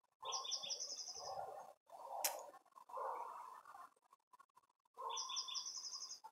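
A songbird singing a short phrase of quick, high, repeated chirps lasting about a second, heard again about five seconds in. Between the phrases there is faint rustling noise and a single sharp click a little after two seconds.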